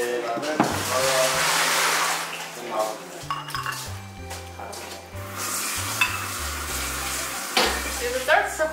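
Food frying in hot oil in a pan, with a loud sizzle about a second in and again from about five seconds. Background music runs underneath.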